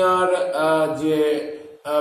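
A man's voice, speaking in a slow, drawn-out, sing-song way, with a short break near the end.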